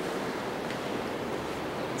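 Steady rushing background noise, even and unbroken, with no distinct sounds standing out.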